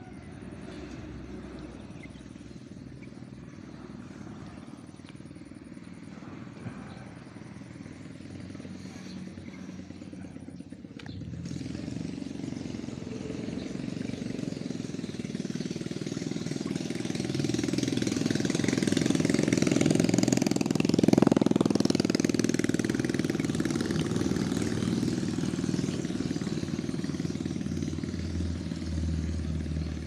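Engine of a passing motor vehicle. It is heard as a low rumble that grows louder from about a third of the way in, peaks about two-thirds through, then eases off.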